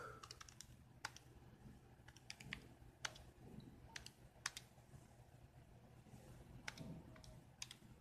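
Faint, irregular clicks of keys being pressed while a sum is keyed in, some single and some in quick runs of two or three.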